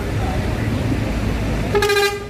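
A bus horn gives one short, loud blast near the end, over a steady low engine rumble and crowd noise.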